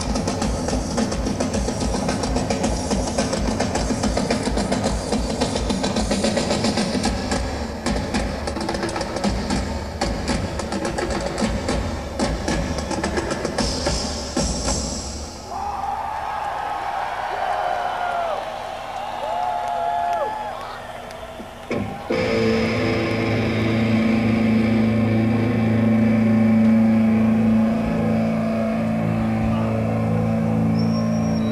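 Live metal band playing at full volume with pounding drum kit and distorted guitars; the music stops about halfway through, leaving crowd noise with scattered shouts, then a single distorted guitar chord is struck and held ringing.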